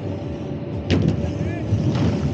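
A BMX rider landing on an inflated airbag lander: one sudden thump about a second in, over a steady low rumble.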